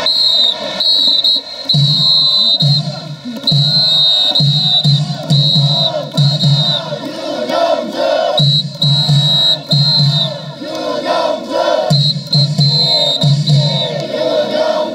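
Baseball stadium cheer music played over the PA, with a large crowd chanting and singing along over a repeating low drum beat.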